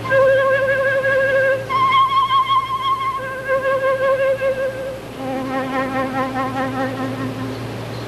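A concert flute playing four long held notes with vibrato, demonstrating its range: a middle-register note, a leap up an octave, back down to the first note, then a drop to a low note an octave beneath it.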